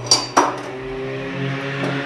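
A steel die block clanks twice against the press's die holder as it is handled, over a steady machine hum.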